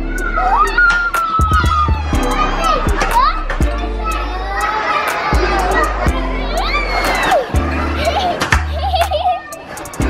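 Young children squealing and shouting with excitement as they ride a rope swing, over background music with a steady bass line.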